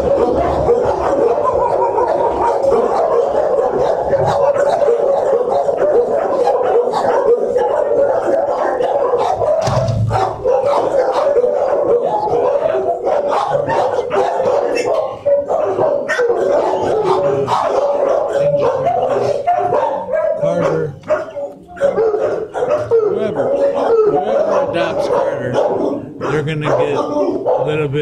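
Many dogs barking at once in shelter kennels: a loud, constant, overlapping din of barks, dipping briefly about twenty-one seconds in.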